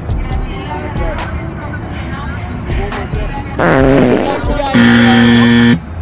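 A loud, flat buzzer-like sound effect, one steady tone about a second long that cuts off suddenly near the end, marking a missed shot. Just before it comes a short, loud burst of laughter.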